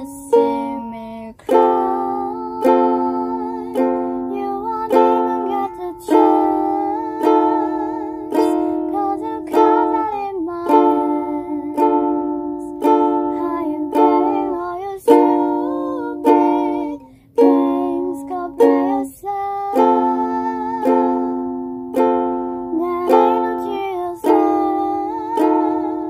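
Ukulele playing strummed chords, a fresh strum about every second that rings and fades before the next, with a brief break in the strumming about three-quarters of the way through.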